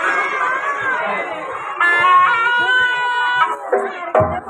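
A person's voice through a loudspeaker, sliding up and down in pitch, then holding one long note from about two seconds in to about three and a half seconds.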